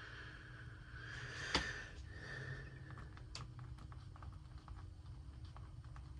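A pen writing on a thin stick, faint scratching strokes as letters are written, with a sharp click about a second and a half in and lighter ticks later.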